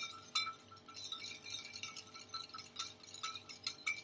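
Wire balloon whisk beating aloe vera gel in a small stainless steel bowl: a quick, irregular run of light metallic clinks as the wires strike the bowl.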